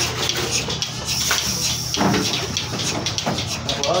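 A valve where a hose hangs from an overhead pipe being opened, with a hiss through the line for about a second and a half, over a steady low machine hum and scattered clicks.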